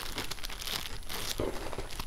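Clear plastic packaging bag crinkling and rustling in the hands as the squishy toy sealed inside it is handled, an irregular run of crackles.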